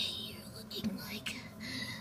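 A person whispering quietly, the words not made out.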